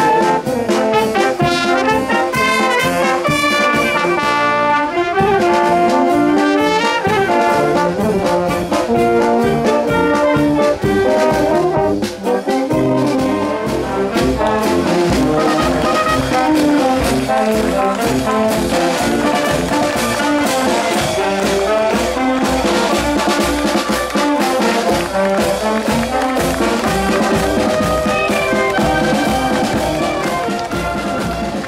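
A filarmónica wind band playing: tuba, trombones, trumpets and saxophones over a snare drum, in continuous loud music with a steady beat.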